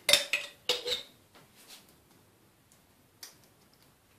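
A spoon clinking against a dish while sauce is spread: two or three sharp ringing clinks in the first second, then a few faint light taps.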